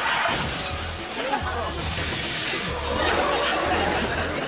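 Glass shattering and a crash as a car rams through a shop front, over background music with a steady low beat. Audience laughter comes in about half a second in.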